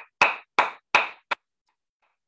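A person clapping their hands four times, about three claps a second, each a sharp crack with a short tail; the last one is shortest.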